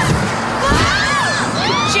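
Several cartoon girls' voices screaming together, their pitches rising and falling, over a loud rushing whoosh of suction as they are pulled through a vacuum tube.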